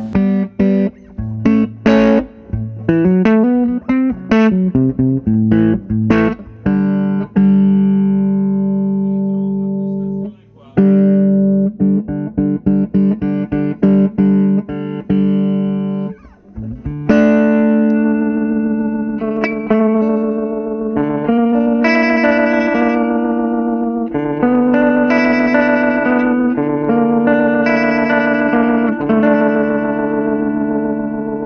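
Semi-hollow electric guitar played through the vibrato-and-tremolo channel of a restored 1960 EkoSuper amplifier. Quick single-note runs come first, then long held chords, then a strummed chord passage from about halfway through.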